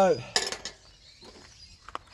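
A brief metallic clink of a steel chainsaw file against the saw chain and bar about half a second in, then a faint tick near the end.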